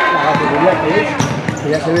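Talking over a futsal ball knocking on a hard indoor court, with a couple of sharp knocks between one and two seconds in.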